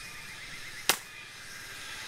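A single sharp pop from a scoped bolt-action air rifle firing a pellet, about a second in.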